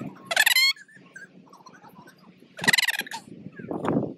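Two short, high-pitched yelping barks from a small dog, about two seconds apart.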